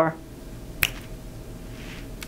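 A single sharp click a little under a second in, against faint room tone.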